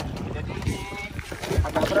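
Water sloshing and splashing against a small boat as a leafy tree is dragged through it, with wind buffeting the microphone. A man's strained voice begins near the end.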